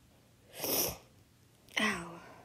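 A person's short breathy huff of air, lasting about half a second, with no voice in it. Just before the end comes a brief voiced sound from the same person.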